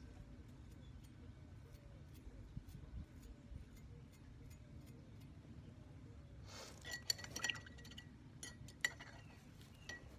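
A fan brush tapped against a metal palette knife to spatter paint. Faint scattered ticks give way, about seven seconds in, to a quick run of clinks with a short metallic ring.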